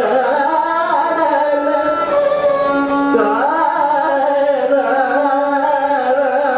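Male Carnatic vocalist singing continuous gliding, wavering ornamented phrases, with violin accompaniment.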